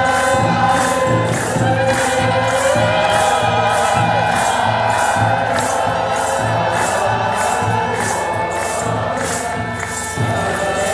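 A large crowd chanting and singing together in Ethiopian Orthodox Christmas chant. Under the voices runs a steady, even beat of low drum thumps and shaken jingles.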